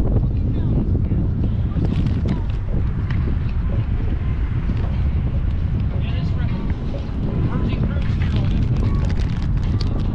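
Wind buffeting the microphone, a heavy, steady low rumble, with faint voices and light knocks of footsteps on a metal gangway, the knocks coming more often near the end.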